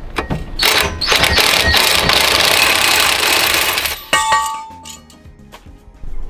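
Makita cordless impact driver running in one burst of about three and a half seconds on a bolt at the front brake of a Mercedes Sprinter, followed by a short metallic clink.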